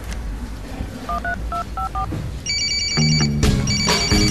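Mobile phone keypad tones: five quick dialing beeps, then an electronic ringtone trilling in two bursts, over background music whose bass line comes in near the end.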